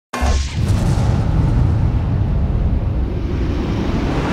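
Cinematic boom sound effect for a logo intro: a sudden deep hit about a tenth of a second in, then a long low rumble that slowly fades.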